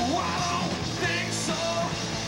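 Rock band playing live, with electric guitars, bass and drums, and a male lead vocal sung hard into the microphone.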